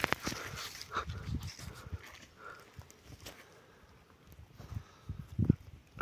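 A dog making a few short, faint sounds, mostly in the first second and once near the end, with quiet in between.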